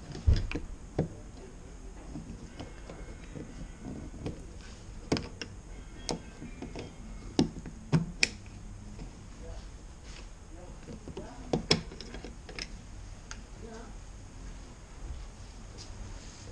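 A screwdriver clicking and tapping against the plastic wiring plug and retaining clip of a Volvo S80 exterior door handle as the plug is prised out, a dozen or so sharp irregular clicks and knocks.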